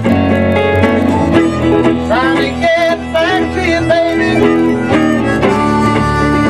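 Live blues band playing a slow, smooth number, with electric guitar to the fore and notes that slide up and down in pitch.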